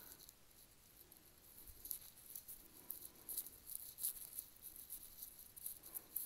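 Quiet room with faint, irregular light ticks and scuffs from someone walking across a bare concrete floor while carrying the camera; the ticks come more often after about two seconds.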